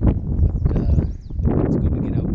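Wind buffeting the microphone, a dense low rumble, under a man's talking.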